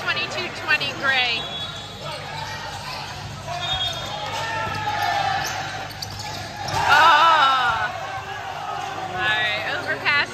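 Volleyball rally on a gym court, ringing in the large hall: sneakers squeaking on the floor, the ball being hit, and players and spectators calling out. A loud burst of shouting and cheering about seven seconds in, as the point is won.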